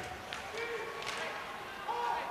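Ice hockey rink sound during play: faint crowd noise and distant voices, with a few sharp clacks about a third of a second and a second in.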